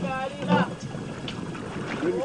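A man's voice makes two short sounds in the first half-second, then steady wind and sea noise on a small open fishing boat.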